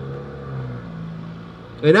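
Car engine pulling away: a low, steady hum that steps up slightly in pitch about halfway through. Speech starts again near the end.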